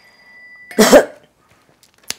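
A woman's single short cough about a second in, the loudest sound, after the fading ring of a high chime.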